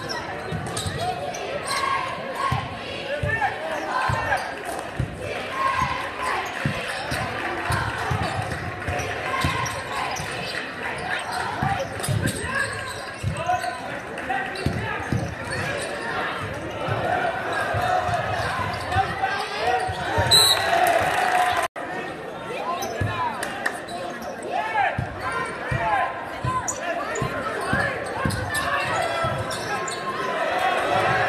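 A basketball being dribbled on a hardwood gym floor, with players' footsteps, over the constant chatter of a seated crowd in a large gym. The sound cuts out for an instant about two-thirds of the way through.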